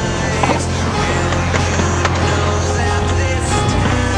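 Skateboard wheels rolling on paving, with a few sharp clacks of the board, mixed over a music soundtrack with sustained notes and a steady low bass.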